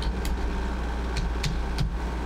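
A few separate computer keyboard keystrokes as a short command is typed, over a steady low hum.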